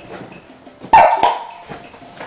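A sudden loud bark-like animal call about a second in, followed closely by a shorter second one.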